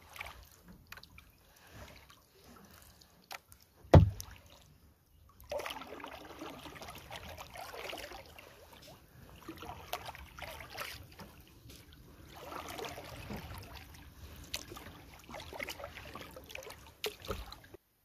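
Kayak paddling on calm water: the paddle dipping, splashing and dripping in repeated strokes, starting in earnest about five seconds in. A single sharp knock about four seconds in, like the paddle striking the hull, is the loudest sound.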